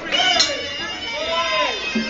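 Men shouting and calling out at ringside over the murmur of a crowd.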